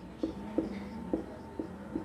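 Marker pen writing on a whiteboard: a quick run of short strokes, about three or four a second, as a word is written out.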